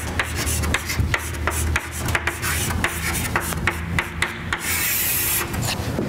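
Chalk writing on a blackboard: a quick run of taps and scratches, several a second, with a longer scraping stroke about five seconds in.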